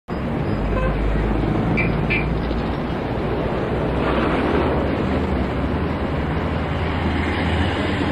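Steady traffic noise: a continuous rumble of passing vehicles.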